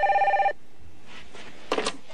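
Cordless telephone ringing with a fast warbling electronic tone, which stops about half a second in. A short sound follows near the end as the handset is lifted.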